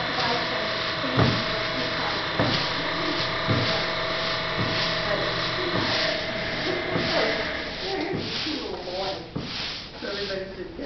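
Steady machine hum with a soft stroke repeating a little more than once a second, from hand work at a printing table. Low voices come in near the end.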